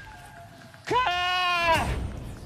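A man shouts "God!" in one long, high, strained cry that breaks in pitch near its start. It is bleat-like, and it comes as he pulls out another cloth pouch.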